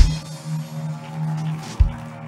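An electronic keyboard holds one steady, low organ-like note under the sermon. A low thud comes right at the start and another near the end.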